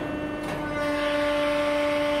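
Hydraulic press brake running with a steady hum from its hydraulic pump. Less than a second in, a louder whirr joins it as the CNC moves the back gauge and beam to the next programmed step.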